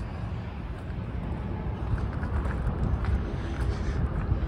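Wind buffeting the microphone, a low, uneven rumble.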